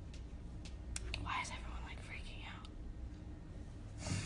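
Whispered speech: a voice whispering for a second or two after a few soft clicks, over a low steady hum.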